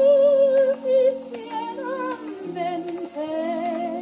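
A 1947 78 rpm shellac record played through the soundbox of an acoustic gramophone: a long note with vibrato is held into the first second, then the melody moves on over held accompaniment.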